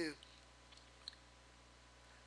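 Near silence in a pause between spoken phrases, with two faint, brief clicks about a second in.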